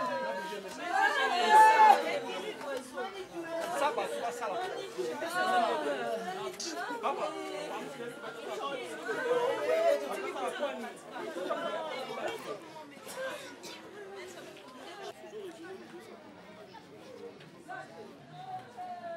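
Several people talking at once in overlapping chatter. It is loudest in the first seconds and fades gradually toward the end.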